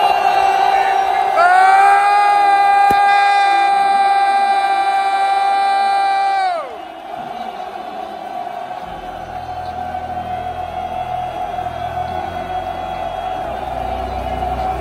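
A large football-stadium crowd cheering and yelling. Over it, a loud musical chord is held for about five seconds, then slides down in pitch and breaks off, leaving the crowd noise going on.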